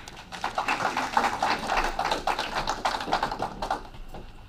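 A small audience clapping, a dense patter of hand claps that fades out near the end.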